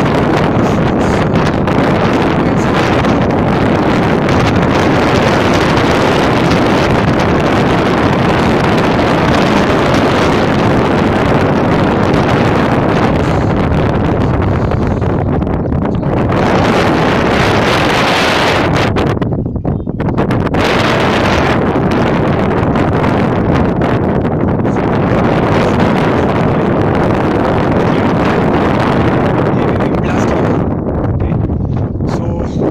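Strong wind buffeting the microphone: a loud, steady rumbling rush that eases briefly twice about halfway through.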